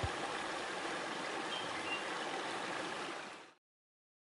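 Husqvarna Automower 105 robotic lawn mower running across grass, heard as a steady, even hiss that cuts off about three and a half seconds in.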